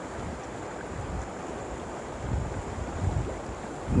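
Steady rush of flowing river water, with low wind buffets on the microphone.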